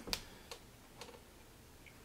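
A knife cutting into a honeydew melon's rind, making a few faint clicks about half a second apart.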